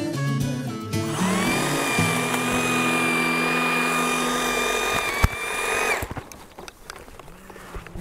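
EGO Power+ HT6500E cordless hedge trimmer's electric motor speeding up about a second in with a rising whine, running steadily, then stopping about six seconds in.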